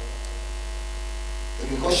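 Steady electrical hum and buzz from a microphone and PA system in a pause between phrases, with a man's voice coming back in near the end.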